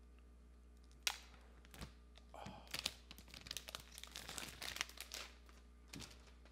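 Paper pull-tab seal strip on an iPhone 12 Pro box being torn away, a crisp crackling tear lasting about three seconds. A single sharp snap comes about a second in, as the tab is first pulled.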